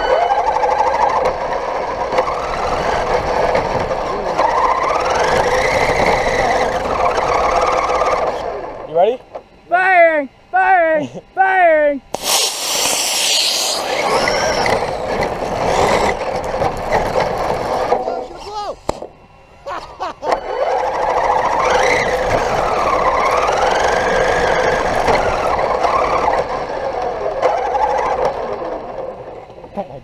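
Traxxas E-Revo brushless RC truck driving, heard from its onboard camera: a steady motor whine that wavers in pitch, over rushing noise. Four short rising-and-falling whines come just before the middle, followed by a loud hiss lasting about two seconds. The truck then runs with the same whine again near the end.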